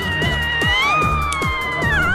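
Electronic background music with a fast, steady beat, over which a long sliding tone rises for about a second and then falls away.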